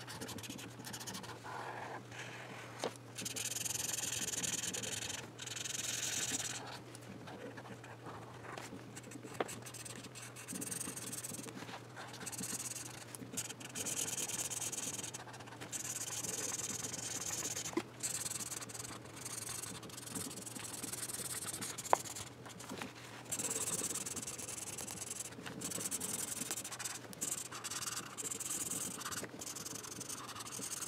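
A water pen's tip rubbing back and forth on coloring paper as a page is coloured in. The scratchy strokes come in stretches of a second or two with short pauses between them, and there is one sharp click about two thirds of the way through.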